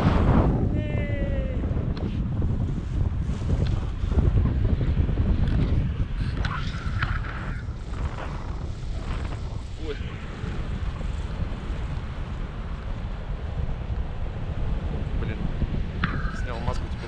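Airflow buffeting a camera microphone in flight under a tandem paraglider: a steady low rush of wind noise, louder for the first few seconds and then easing.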